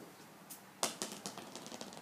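Plastic street-hockey ball landing on pavement and bouncing: a few faint sharp taps, the loudest a little under a second in, followed by quicker, smaller ticks as it settles.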